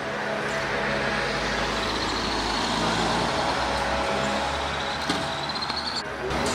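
Steady street traffic noise, with a faint high whine rising slightly in the second half.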